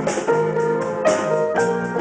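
Grand piano playing chords in a live band's instrumental passage, with cymbal hits from a drum kit near the start and about a second in.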